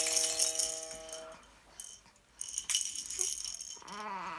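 Hanging play-gym toys rattling in bursts as they are knocked and swing, with a chime-like ringing chord that fades out about a second and a half in.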